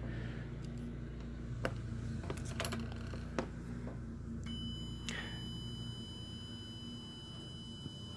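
Faint clicks and taps of multimeter test probes being handled and set on a diode's leads, over a steady low hum. About halfway through, a faint steady high-pitched tone starts and holds.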